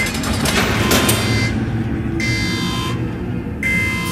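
Loud, rough rumbling noise with a high screeching tone that comes in about halfway through and again near the end: the noisy intro to a heavy metal song, before the band starts playing.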